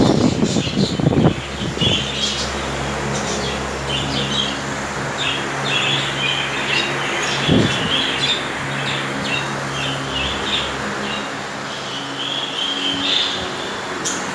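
A flock of budgerigars chirping and chattering continuously over a steady low hum. One short thump comes about halfway through.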